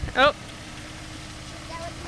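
Car engine running steadily at low speed, a low hum heard from just outside the car.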